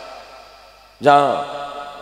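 A man's voice chanting one drawn-out word with a falling pitch about a second in, over a steady held musical drone.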